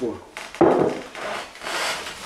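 A wooden chair scraping across wooden floorboards as it is pulled out, in two drags: one about half a second in and another near the end.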